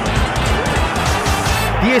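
A short, loud burst of music with heavy bass, cut in between stretches of radio commentary, which resumes near the end.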